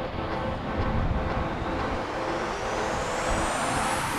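Steady rushing noise of wind and snow on the microphone of a camera moving down a ski run. A thin rising whistle builds over the last couple of seconds.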